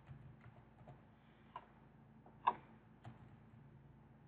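A few faint, widely spaced computer keyboard keystrokes, typed slowly one at a time, the loudest about two and a half seconds in, over a low steady hum.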